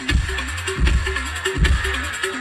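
Loud dance music with a heavy bass beat and a short melodic figure repeating several times a second.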